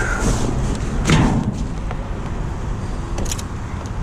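Wind rumbling on the microphone while a flat-screen TV is handled against the metal rim of a dumpster: a brief rush of noise about a second in and a few sharp clicks near the end.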